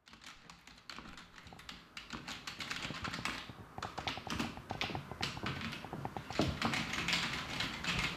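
Typing on a computer keyboard: a quick, uneven run of key clicks that gets busier after the first couple of seconds.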